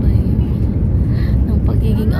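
Steady low rumble of engine and airflow noise inside an airliner cabin during descent, with a faint voice at times.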